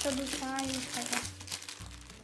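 Clear plastic shrink-wrap being torn open and crinkled by hand, with a voice heard over it during the first second or so.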